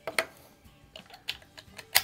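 A few sharp clicks and clacks from handling the rifle and its ammunition at the shooting bench, spaced out, the loudest at the very end.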